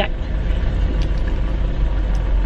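Steady low rumble of a car heard from inside the cabin, from the back seat.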